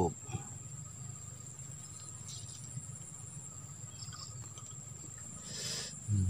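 Steady high-pitched chirring of insects, with a brief rushing swish about five and a half seconds in.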